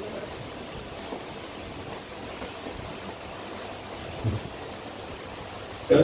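Steady hiss of background noise in a pause between spoken phrases, with one short, low sound about four seconds in.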